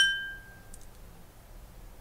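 A small bell struck once, ringing with a clear tone that fades within about half a second. It is the signal for the student to pause and answer the drill question.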